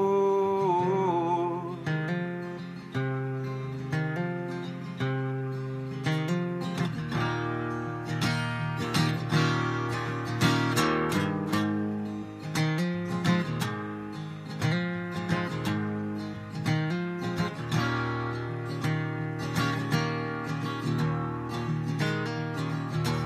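Acoustic guitar playing an instrumental break in a country-folk song, strummed and picked, the playing growing busier after several seconds. A held sung note wavers and fades in the first second or so.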